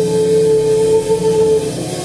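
Live trio music on a Kurzweil PC88 stage piano, fretless bass and drums, with one long note held steady that ends about a second and a half in.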